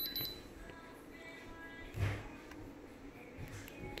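Diamond Selector II thermal diamond tester beeping rapidly with its probe on a stone, a sign that it reads the stone as diamond. The beeping stops just after the start and is followed by quiet, broken by a soft knock about halfway.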